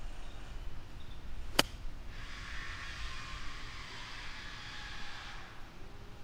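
A golf iron striking the ball on a pitch shot from fairway turf: one sharp click about a second and a half in.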